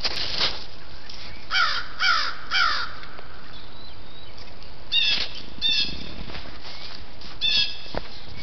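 Crows cawing: three harsh caws about half a second apart starting around a second and a half in, then three more between about five and seven and a half seconds, over a steady hiss.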